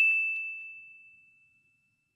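A single bell ding sound effect: one high, clear tone struck just before and ringing on, fading away over about a second.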